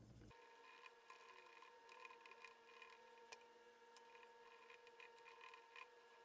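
Near silence: a faint steady hum with a few faint ticks.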